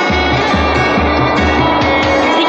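Background film score: music with held tones over a bass note pulsing about twice a second.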